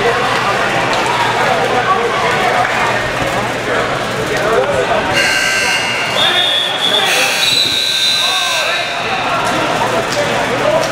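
Gymnasium chatter of many voices, with an electronic match buzzer sounding from about five seconds in for about four seconds, louder in its second half.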